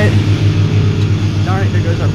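Microwave oven running with a steady low hum.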